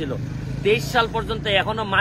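A man speaking Bengali over a steady low engine hum of street traffic. The first half second has only the hum before his voice comes back in.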